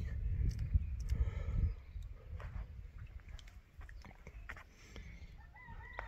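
Wind rumbling on a phone microphone, easing after about two seconds. Near the end, a faint, drawn-out call from a distant bird starts and runs on past the end.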